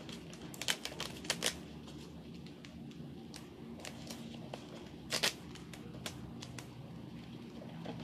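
Hands handling and pressing down a plastic stencil on a table, to mask off the part to be used: faint rustling with a few light clicks and taps, the clearest about five seconds in, over a steady low hum.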